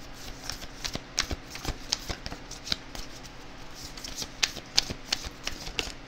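Oracle cards being shuffled by hand: a run of quick, uneven snaps and rustles of the cards.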